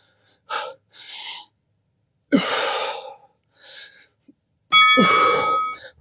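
A man breathing hard through a set of dumbbell squats: a series of forceful exhales and gasps, the strongest about two seconds in. Near the end a short ringing tone lasting about a second sounds over one breath.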